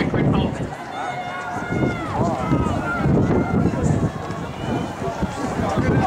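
Spectators' voices shouting and calling to runners going past, one voice holding a long call that bends in pitch from about one to two and a half seconds in, over steady outdoor background noise.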